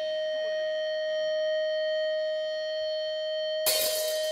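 An electric guitar through its amp holds one steady, sustained high tone. Near the end the drum kit and guitar crash back in loudly.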